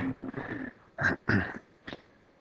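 Several short, soft voice-like sounds in quick succession, such as breaths or a quiet chuckle, well below the level of the surrounding talk.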